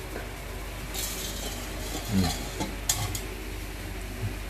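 Light splashing of water and a few sharp clicks in a stainless-steel bowl of live bait worms, with a soft hiss about a second in and the clicks near the end.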